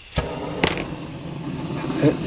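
A handheld propane gas torch being lit: two sharp clicks within the first second, then the steady hiss of the burning gas.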